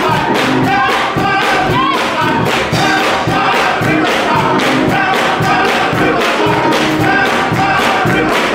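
Men's gospel choir singing to a steady, upbeat rhythm, with hand clapping keeping the beat.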